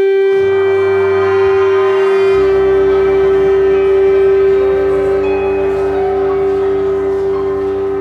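A high school jazz big band of saxophones and brass opening a tune with one long, loud held chord; lower notes join about half a second in and again about two seconds in.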